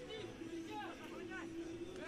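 Distant voices of players and spectators: shouts and chatter, with a steady low hum held through most of it.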